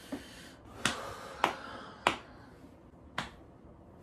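Four sharp clicks, the first three about half a second apart and the last after a gap of about a second, over a faint hiss.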